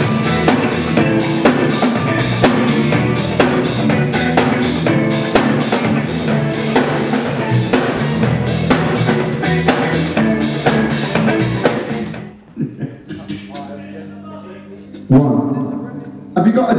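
A band playing, with a drum kit keeping a steady beat of about two strokes a second. About twelve seconds in the drums drop out and the music falls to quieter held notes, then one loud hit comes near the end.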